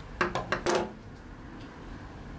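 Several quick, light metallic clicks and clinks in the first second as a steel caliper and piston rings are handled on the workbench.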